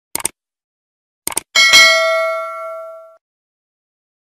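Subscribe-button animation sound effect: a quick double mouse click, another double click about a second later, then a bright notification-bell ding that rings out and fades over about a second and a half.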